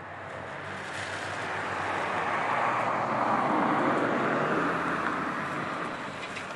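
A rushing outdoor noise that swells steadily to a peak three or four seconds in and then fades away, like something passing by.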